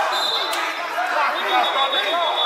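Basketball bouncing on a gym floor amid players' and spectators' voices, with the echo of a large gymnasium. A single sharp knock comes about half a second in.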